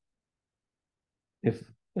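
Speech only: about a second and a half of total silence, then a voice says a single word.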